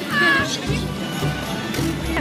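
A woman's short, high-pitched excited squeal right at the start, then music with repeated low bass notes carrying on through.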